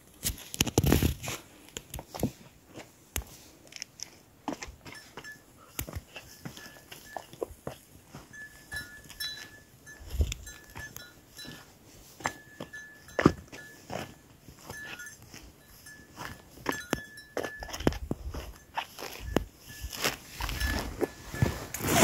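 Wind gusting on the microphone of a handheld camera, with many small knocks and clicks from handling it, and a faint high-pitched tone that comes and goes through the middle and later part.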